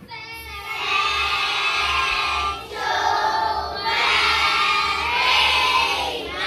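A class of children's voices together in unison, in long drawn-out phrases with short breaks between them.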